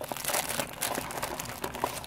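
Clear plastic wrapping crinkling and a small cardboard box scuffing as hands try to pull a plastic-wrapped watch out of a tight box: a run of quick, irregular crackles.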